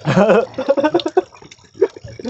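A man's voice laughing and exclaiming in short bursts.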